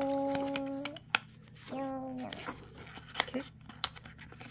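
A voice humming two held, flat notes, the second a little lower and shorter, while thin card is folded and creased by hand with sharp clicks and crinkles, one louder snap just after the first note.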